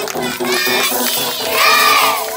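Group of children shouting, with a loud, high, drawn-out shout near the end, over the tail of song music.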